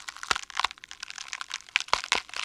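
A quick, irregular run of small clicks and crackles, with no speech over it.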